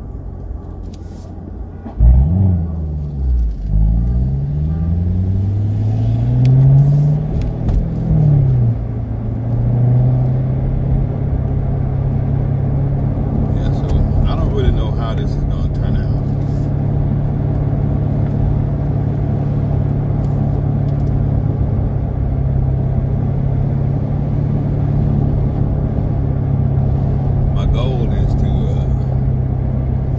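2017 Corvette Grand Sport's 6.2-litre V8 accelerating hard from about two seconds in, the revs climbing in three pulls with gear changes between. It then runs steadily at cruising speed. It is heard from the open, top-down cockpit.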